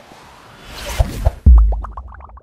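A news-channel logo sting. A swelling whoosh leads to two quick pops, then a deep boom about one and a half seconds in, the loudest moment. A quick run of short, bright plinked notes follows the boom.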